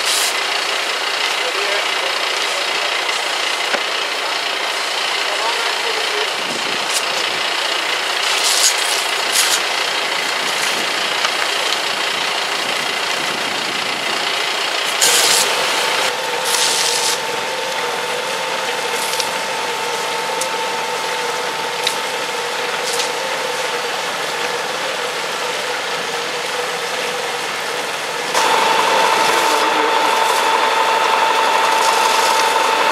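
Fire engine running steadily at the scene, a constant engine and pump noise. A steady whine comes in about halfway and grows louder near the end.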